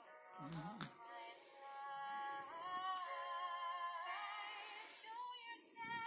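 A high voice singing slowly, holding long notes that glide gently between pitches, like a lullaby. A short low sound comes about half a second in.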